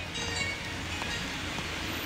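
Steady rain falling on an open umbrella and wet pavement, an even hiss.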